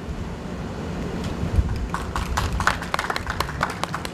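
Small audience clapping after a poem ends, starting about a second in and going on to the end, over a low steady rumble.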